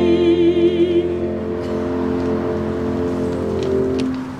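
The last held chord of a carol on an electronic keyboard, with a woman's sung note with vibrato on top that ends about a second in. The keyboard chord holds on and is released near the end.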